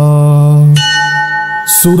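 A chanting voice holds the long last note of a Sanskrit stotram verse. Just under a second in, a bell rings once with a steady ring lasting about a second before the chanting starts again.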